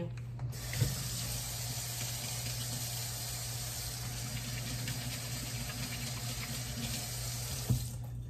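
Water running steadily from a tap for hand washing, starting about half a second in and cutting off shortly before the end.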